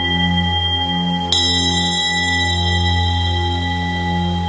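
Tibetan singing bowls ringing in long, overlapping steady tones, the low tones pulsing with a slow wobble. About a second in, a bowl is struck, adding bright high ringing overtones over the sustained drone.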